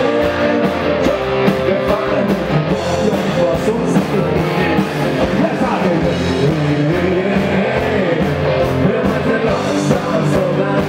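A live party band playing an amplified rock-style song: singing over electric guitar and a steady drum beat.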